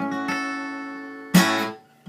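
Acoustic guitar strumming an A chord that rings and slowly fades. About one and a half seconds in, a second, sharper strum, the loudest sound, is quickly damped.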